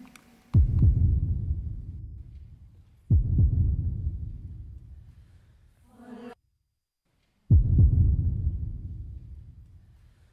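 Single piano notes struck one at a time in a live concert recording, giving a choir its starting pitches: three low notes, each dying away over two or three seconds. Just before the third there is a short hummed tone, then about a second of dead silence.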